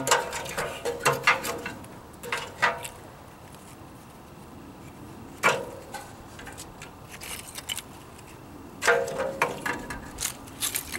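Sticks of kindling and small split wood knocking against the steel firebox of a wood-burning camp stove as they are stacked in, some knocks with a short metallic ring. A cluster of knocks at the start, one sharp knock about five seconds in, and another cluster near the end.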